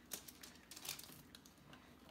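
A few faint, scattered clicks and light taps of things being handled on a kitchen counter.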